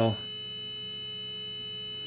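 Steady 400 Hz test tone from the Jeep WPSS-1A portable radio's speaker. The radio is tuned to a tinySA signal generator's 101.5 FM output modulated at 400 Hz, used as a calibration signal for aligning the tuning dial.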